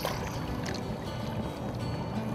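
River water lapping and sloshing against an aluminum boat hull over a steady low rumble, with a few faint knocks.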